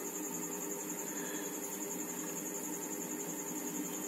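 Quiet room tone: a steady hiss with a faint, constant high-pitched whine and a low hum, with no distinct events.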